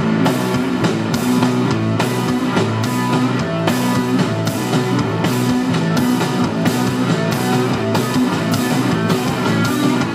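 Live rock band playing an instrumental passage: electric guitar, bass guitar and drum kit, with cymbal and drum hits keeping a steady beat.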